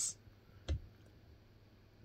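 A single short click about two-thirds of a second in, against quiet room tone.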